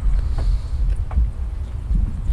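Wind buffeting the microphone outdoors, a gusting low rumble.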